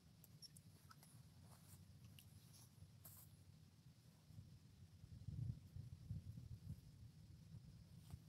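Near silence: faint outdoor ambience with a low rumble, a little stronger past the middle, and a few faint high ticks in the first few seconds.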